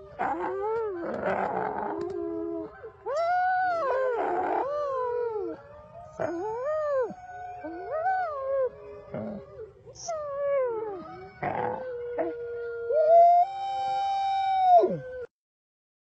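A dog howling in a series of long, rising-and-falling calls, some broken by rough, whining breaths. It cuts off suddenly near the end.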